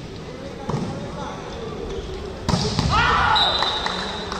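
Indoor volleyball rally: a sharp ball strike about two and a half seconds in, followed by players shouting, then a referee's whistle blowing a long steady note near the end to stop the rally.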